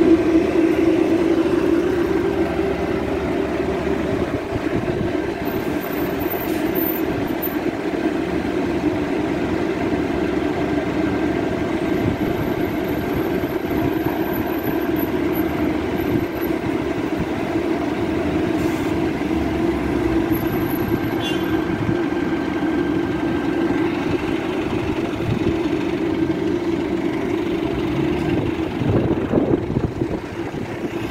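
Double-decker bus standing at the kerb with its engine idling: a steady drone that holds level throughout, with a faint high whine above it.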